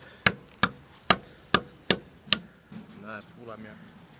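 Six sharp hammer blows, about two a second, striking hard material, followed by a brief voice.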